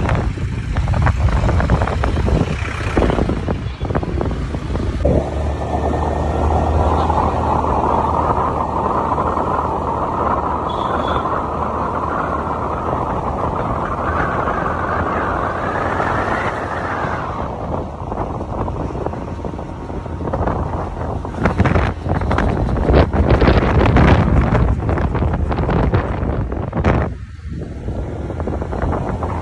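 Wind rushing and buffeting on a phone's microphone carried on a moving scooter, over engine and road noise. An engine drone swells through the middle, rising slightly in pitch before falling away, and the wind gusts harder near the end.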